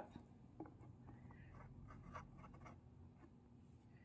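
Faint scraping of a flat stick dragged along the bottom rim of a plastic garbage can, pushing wet acrylic paint out of the groove, with a few soft ticks.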